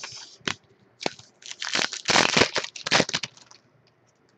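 Foil trading-card pack wrapper crinkling and tearing as it is opened by hand. There is a sharp crackle about half a second in, then a run of loud crinkling, loudest around two seconds in.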